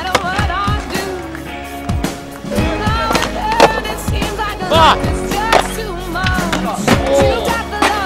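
Music with a sung vocal over skateboard sounds: sharp, irregular board pops and landings on concrete.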